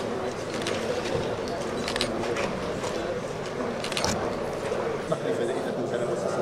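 Chatter of a gathering: many people talking at once in an indistinct murmur, with a few sharp clicks.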